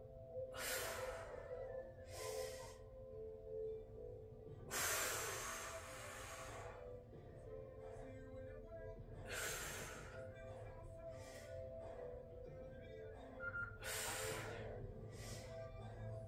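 A woman breathing hard from kettlebell exertion, a forceful breath every few seconds, the longest about five seconds in, over faint background music.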